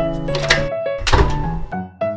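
Door of a miniature toy toaster oven being pulled open: a light knock, then a louder, deeper thunk as the door drops open, about a second in. Background music plays under it.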